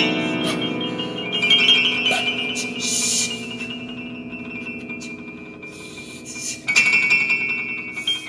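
Contemporary music on grand piano: sustained notes ring and slowly fade, and a new loud attack comes about seven seconds in. A short high hiss sounds about three seconds in.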